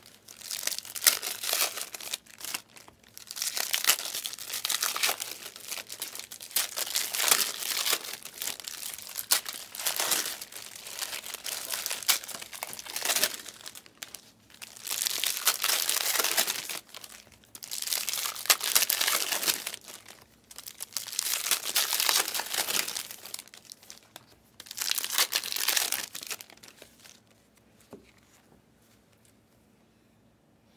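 2023-24 Panini Select basketball card pack wrappers being torn open and crumpled, in a run of crinkling bursts each a second or two long. The bursts die away near the end.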